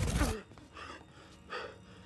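A sudden loud whoosh of Ant-Man's suit returning him to full size, with a short falling cry caught in it, then a few faint breathy gasps.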